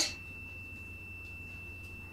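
Quiet background with a steady, faint high-pitched whine held at one pitch, over a low hum: electrical noise in the recording.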